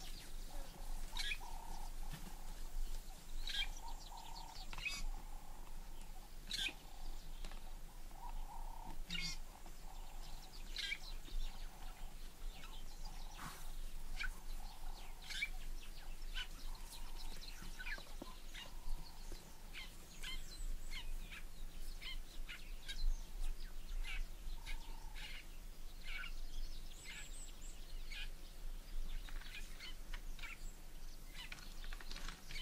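Wild birds chirping: many short, sharp chirps scattered throughout, sometimes several close together, with a softer, lower call coming and going.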